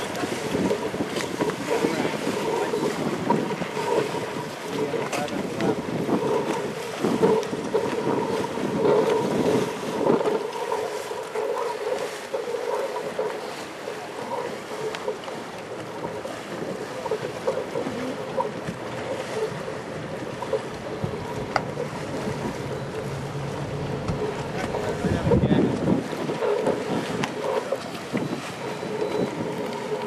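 Wind gusting on the microphone over choppy water, with waves lapping and splashing, rising and falling in strong gusts.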